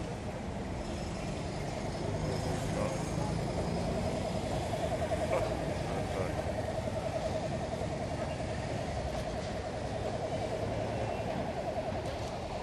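Roadside traffic: motorcycles and cars driving past with their engines running, and a steady engine drone that comes in about four seconds in. Voices talk in the background.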